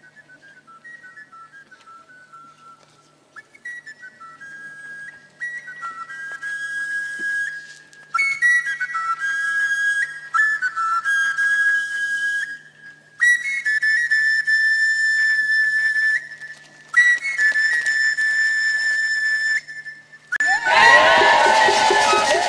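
A high, whistle-toned melody played in short phrases that step between a few notes, with brief pauses between phrases, growing louder after the first few seconds. Near the end, drums and fuller music come in loudly.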